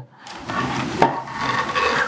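Scraping of a hard object dragged across a tabletop, with a single knock about a second in.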